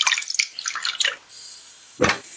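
Water poured from a cup into a small saucepan over a block of butter and sugar, splashing and dripping, then thinning to a faint hiss after about a second.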